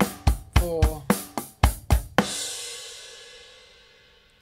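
Electronic drum kit playing a groove of bass drum, snare and hi-hat, with quick bass drum strokes falling between the hi-hat notes. It ends about two seconds in on a cymbal crash that rings on and slowly fades.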